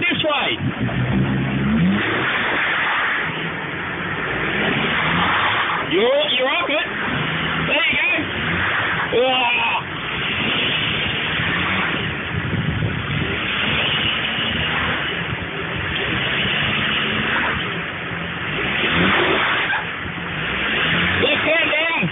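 Jeep Cherokee XJ engine working under load, revving up and easing off in bursts as the lifted 4x4 climbs over a wet rock ledge.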